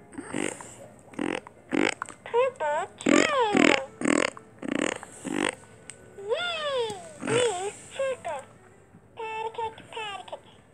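Talking plush frog toy playing a run of short breathy bursts and high, squeaky rising-and-falling voice calls, like playful giggles and squeals.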